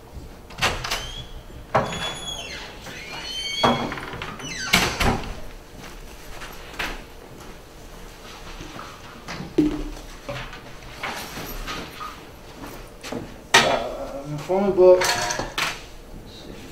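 Room sounds: scattered knocks and clicks, a few short squeaks and indistinct voices, over a faint steady hum.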